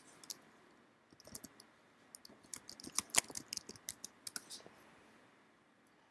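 Typing on a computer keyboard: a quick, irregular run of key clicks starting about a second in and thinning out near the end.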